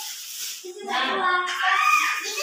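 Young children's voices talking, starting about half a second in.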